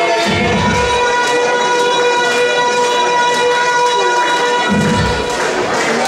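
Live electronic noise music from effects pedals and electronic devices: several steady high tones drone together over a noisy hiss, with two short bursts of low rumble, just after the start and about five seconds in.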